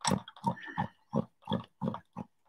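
A woman's quiet breathy vocal sounds in short separate bursts, about three a second, without clear words.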